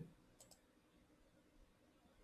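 Near silence: room tone, with two faint, short clicks about half a second in.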